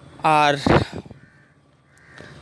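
A brief wordless sound from a man's voice, then a single short harsh caw from a crow.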